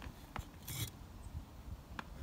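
A brick being shifted on cinder block and brick: a couple of light knocks, then a short gritty scrape a little under a second in.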